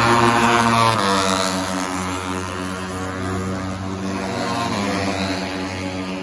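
Moto3 race bikes' 250 cc single-cylinder four-stroke engines running at high revs past the grandstand, the pitch dropping a step about a second in and then holding steady.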